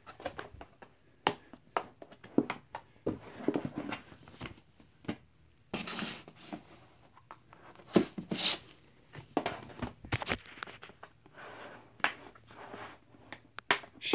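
Card-collection binders being handled: one set back on a shelf and another slid out from between the others and laid down, with irregular knocks, scrapes and rustling.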